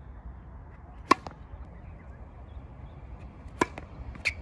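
Tennis ball struck hard by a racket twice, about two and a half seconds apart; each hit is a sharp crack followed closely by a fainter tap.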